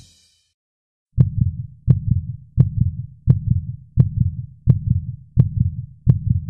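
Heartbeat sound effect starting about a second in: a steady run of low thudding beats, each opening with a sharp click, about three beats every two seconds.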